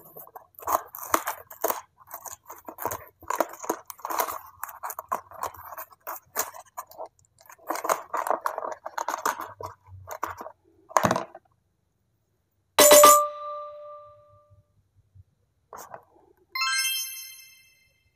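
Cardboard of a toy surprise box being torn open and handled by hand: about ten seconds of crinkly rustling and tearing with small clicks, then a sharp knock. A short ding with a ringing tone follows, and near the end a bright, sparkling chime sound effect.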